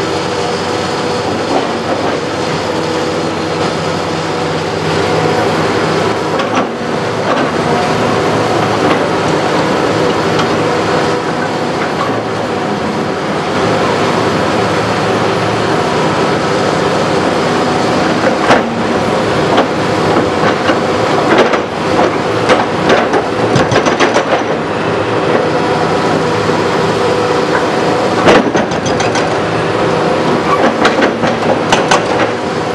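Hitachi Zaxis 350 LCN excavator's diesel engine running steadily under hydraulic load. In the second half a hydraulic breaker chisel hammers at concrete in repeated runs of blows, with loose debris clattering.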